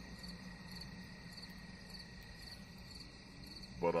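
Faint background chirping, about two short high chirps a second, over a steady thin whine and low hum.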